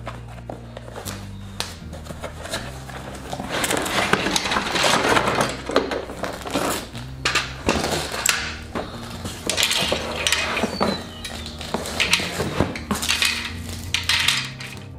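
Yellow plastic egg-turner tray and egg-holder racks clattering and knocking, with cardboard rustling, as an automatic egg turner is unpacked from its box onto a concrete floor. A soft background music bass line runs underneath.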